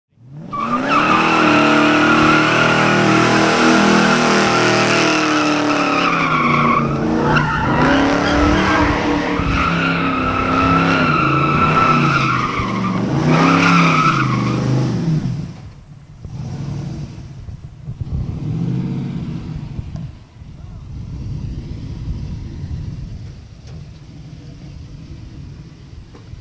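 A cammed 408 LS V8 in a Chevrolet pickup held at high revs in a burnout, the rear tires squealing steadily, the pitch wavering up and down. After about fifteen seconds the squeal stops suddenly and the engine runs on much more quietly, with a couple of lighter revs.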